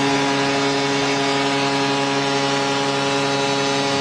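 Arena goal horn sounding one long, steady low tone over a cheering, clapping crowd, marking a home-team goal.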